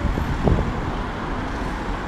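City road traffic: cars driving past close by, a steady wash of engine and tyre noise.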